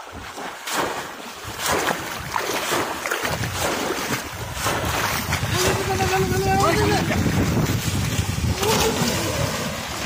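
Shallow floodwater splashing and churning as a bamboo polo fish trap is plunged into it again and again by a man wading through it, heavier and louder from about three seconds in. A man's voice calls out briefly around the middle.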